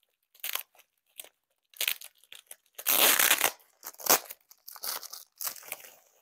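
Tape being peeled and torn off a wrapped item, with crinkling of the wrapping, in irregular bursts; a longer rip about three seconds in is the loudest.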